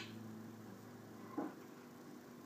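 Quiet just after the final chord of two classical guitars, the last notes fading away into room tone. There is a short noise at the very start and a brief faint sound about one and a half seconds in.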